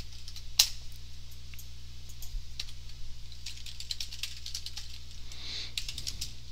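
Typing on a computer keyboard: a quick, irregular run of key clicks, one louder about half a second in, over a low steady hum.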